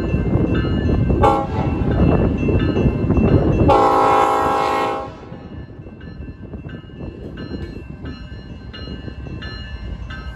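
Diesel locomotive air horn sounding a short blast about a second in, then a longer blast ending about five seconds in, over a loud low rumble. After that a grade-crossing bell dings steadily.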